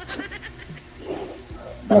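A woman laughing briefly: a few short breathy bursts at the start, then a softer laugh about a second in.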